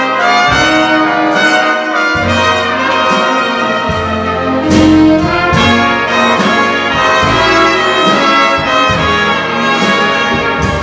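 A big band playing an instrumental passage: trumpets, trombones and saxophones together over upright bass and drums, with no vocal.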